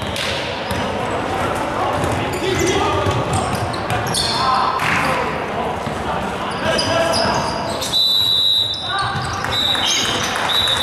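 Live basketball game in a gym: sneakers squeaking in short high chirps on the hardwood court and a basketball bouncing, under indistinct players' voices in the echoing hall.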